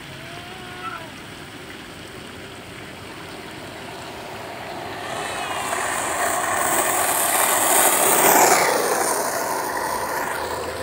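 Skateboard wheels rolling fast on asphalt, a rushing rumble that swells as the board approaches, is loudest near the end as it passes close by, then begins to fade.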